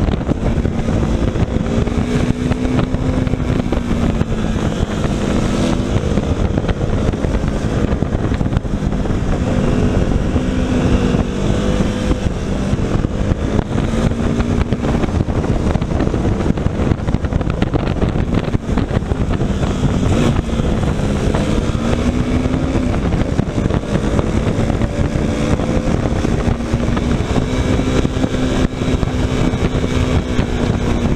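KTM motorcycle engine running under way, its pitch rising and falling as the throttle is opened and closed, under heavy wind noise on the microphone.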